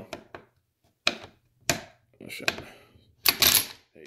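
Sharp metallic clicks and knocks from handling the exposed receiver of a Century Arms RAS47 AK-pattern rifle, spread a second or so apart, then a longer, louder rush of noise near the end.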